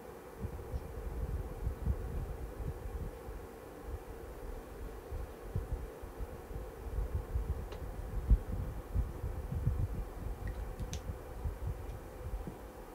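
Irregular low rumbling and soft bumps of microphone handling noise as her clothing shifts while she works the pencil, the strongest knock about eight seconds in, over a faint steady electrical hum.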